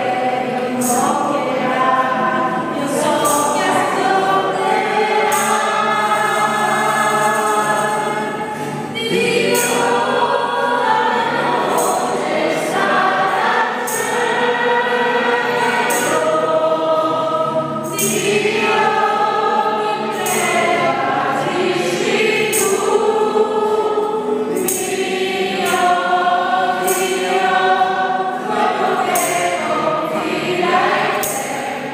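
A group of voices singing a hymn together, with a sharp percussive beat about once a second.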